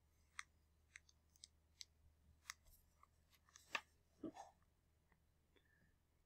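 Faint handling noise of a smartphone brought over a sheet of paper: a scattered series of small clicks and taps, then a louder knock and brief rustle about two-thirds of the way through.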